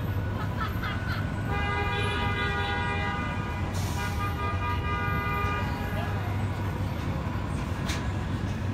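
Steady street traffic rumble, with a vehicle horn sounding two long blasts: the first starts about a second and a half in, and the second, longer one follows a moment later. A brief hiss comes near the middle.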